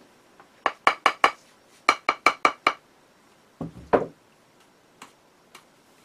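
Light, quick taps of a rubber mallet on a plaster plate mould, four and then five in two short runs, to break the suction that holds the shrinking greenware plate to the mould. A duller knock follows just before the midpoint, then a couple of faint ticks.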